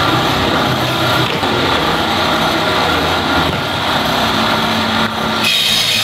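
Woodworking machinery in a carpentry shop running steadily, a loud, dense whirring. A higher, thin ringing tone joins near the end.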